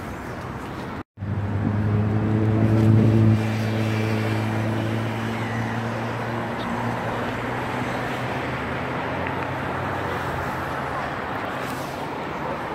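A low, steady engine drone over a wash of outdoor city noise, cutting in after a brief dropout about a second in. It is loudest for the next two seconds, then eases a little and holds steady.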